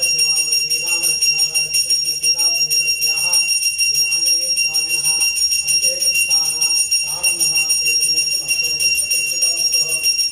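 Temple bell ringing continuously, struck in a rapid, steady rhythm with a sustained high ring, during a milk abhishekam of a Hanuman idol. A man's voice, chanting or speaking, is heard faintly in patches underneath.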